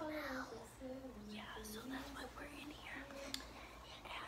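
Children whispering and speaking softly in hushed voices.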